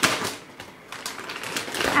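Packaging of a felt Halloween decoration set being opened and handled: a rustling noise, loud at first, dropping away about half a second in and building again near the end.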